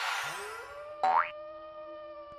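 Cartoon intro sound effects: a shimmering whoosh fades out, then a rising glide settles into a held tone, and a quick upward 'boing' sweep comes about a second in.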